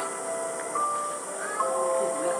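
A simple tune of held, even tones stepping between pitches, each note lasting from under half a second to over a second, over a steady high hiss.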